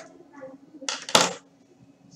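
A short clattering, clinking burst about a second in, lasting about half a second, like something small and hard being handled or knocked near the microphone.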